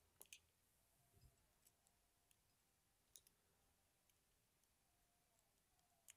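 Near silence broken by a few faint, scattered metallic clicks: steel tweezers picking at the springs and pins in the chambers of a lock cylinder as it is taken apart.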